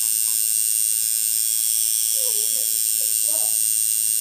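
Electric tattoo machine buzzing steadily as the tattooist works the needle into skin.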